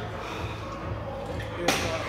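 Gym background: music with a low pulse and faint indistinct voices, with one sharp thud about one and a half seconds in.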